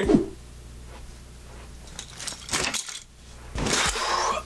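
Light clinking and rattling in two short bursts in the second half, over a low steady hum.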